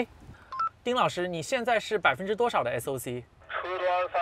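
A short two-note electronic beep, then a person talking in words the English transcript does not catch. Near the end, a thin, narrow-sounding voice comes through a phone held to the ear, as on a phone call.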